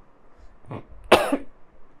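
A woman coughs once, about a second in, after a brief smaller throat sound.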